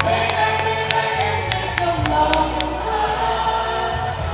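A group of voices singing together over backing music with a steady ticking beat.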